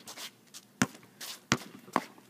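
Basketball dribbled on an outdoor asphalt court: three sharp bounces, the last two coming closer together.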